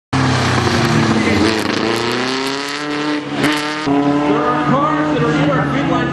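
A car's engine accelerating hard under load on a cone course, its pitch rising steadily for about three seconds, then dropping back at about three and a half seconds as it shifts or lifts. Voices are heard over it in the second half.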